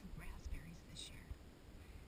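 A woman speaking softly, a few faint, half-whispered words, with a brief high chirp about a second in.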